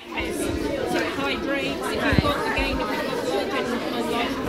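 Indistinct chatter of several people's voices in a busy shop, with a low bump about two seconds in.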